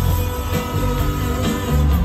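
Live band playing an instrumental passage: guitar over sustained keyboard notes, bass and drums.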